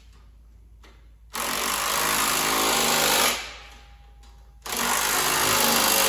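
Power impact wrench running in the rear-rack mounting bolts on an ATV frame, in two bursts of about two seconds each: the first about a second and a half in, the second near the end.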